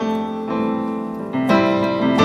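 Piano playing slow, sustained chords, with a new chord struck about one and a half seconds in.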